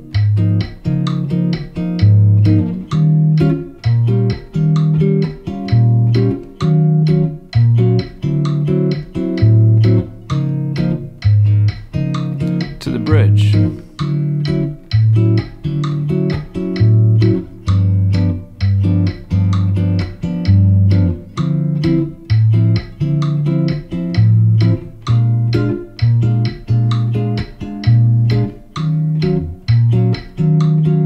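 Gibson archtop guitar played fingerstyle in a bossa nova pattern: low thumb bass notes about once a second under syncopated plucked 6th and 9th chords, held at a steady tempo, with a metronome ticking along.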